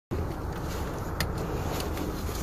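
Steady low rumble of a car heard from inside the cabin, with a few faint clicks, the clearest about a second in.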